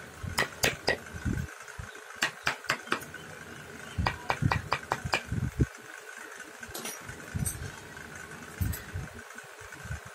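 Wooden mallet striking a steel hand chisel as it cuts a relief pattern into a wooden dome. The taps are sharp and light, in short runs of a few blows with pauses, and a quicker run of about a dozen in the middle.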